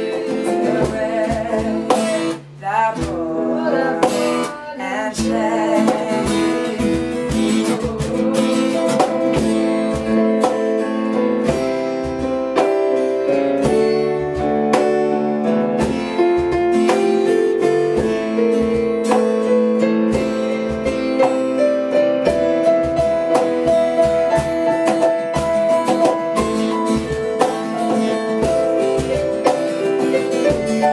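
Instrumental passage on acoustic guitar and a Casio digital keyboard with a piano sound, over a steady cajon beat. A sung line trails off in the first few seconds.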